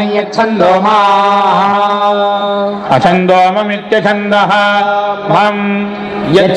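Men chanting Vedic verses (Veda parayanam) on a steady reciting pitch, one syllable drawn out for about two seconds and a short break near the middle.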